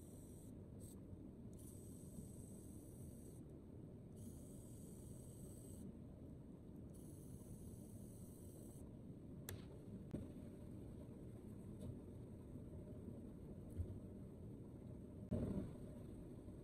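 Pen-style electric precision screwdriver running in short bursts of a faint high whine, each one to two seconds long, as it backs out the small frame screws of a micro drone. A few light clicks follow, then a handling knock near the end as the canopy comes off.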